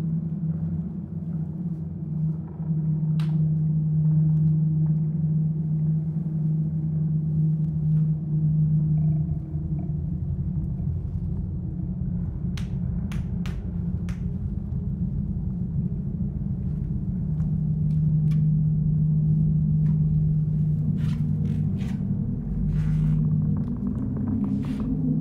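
A steady low drone, a deep hum that holds one pitch throughout, as the sound score under a stage dance piece. A few short clicks and knocks are scattered over it, most of them in the second half.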